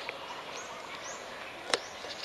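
Outdoor ambience with a few faint, short, rising bird chirps over a steady hiss, and one sharp click about three-quarters of the way through.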